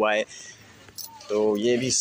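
A man's voice speaking in short bits, broken by a pause of about a second that holds only a faint click.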